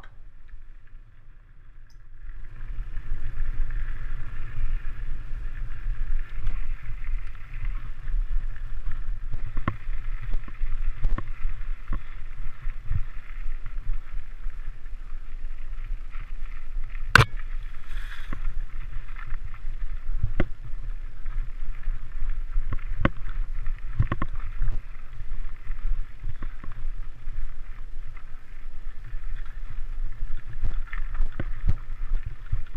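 Wind buffeting the microphone of a camera on a moving mountain bike, with the tyres on a dirt singletrack. Scattered clicks and knocks from the bike over rough ground come through it, and one sharp knock sounds about halfway through. The noise builds up about two seconds in.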